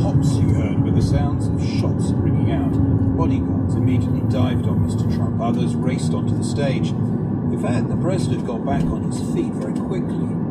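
Car cabin road noise with a steady engine hum, under a radio news report playing a recording from a crowd, with voices shouting and calling out at irregular moments.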